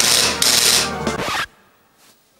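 Apartment door intercom buzzing: two harsh buzzes in quick succession, cut off about one and a half seconds in.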